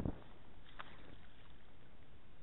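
Steady noise of wind and rippling river water, with a low rumble of wind on the microphone at the start and a short rush of noise about a second in.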